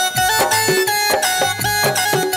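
Live stage band playing an instrumental passage of a Bhojpuri song: a keyboard melody moving in short held notes over steady hand-drum beats.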